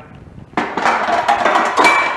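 Aluminum powder can scraping and clattering as it is slid through a metal scuttle in a door, starting about half a second in, with a brief metallic ring near the end.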